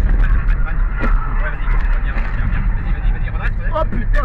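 Steady low rumble of engine and road noise inside a car's cabin at motorway speed, with a few short clicks and a voice starting to exclaim near the end.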